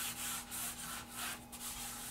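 Bare hand rubbing charcoal into drawing paper to blend the shading, a soft dry brushing in repeated quick strokes.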